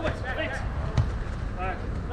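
A football struck once with a sharp thud about a second in, amid players' shouts across the artificial-turf pitch.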